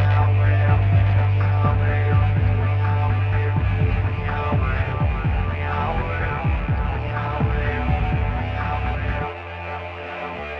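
Industrial electronic music: a loud, steady low synth drone under a swarm of short swooping synth tones. Near the end the drone drops away and the music thins out.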